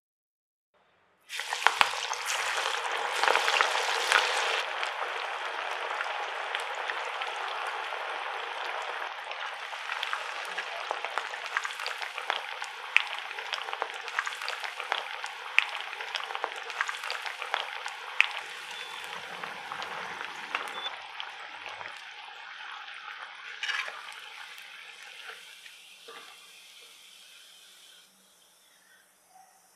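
Chana-dal and banana-flower vada patties deep-frying in hot oil: the sizzling starts suddenly about a second in, is loudest for the first few seconds, then fades steadily while they fry, with sharp crackles and pops throughout.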